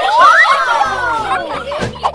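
A short burst of several children's voices cheering over playful background music. The voices rise together, then trail downward over a second or so.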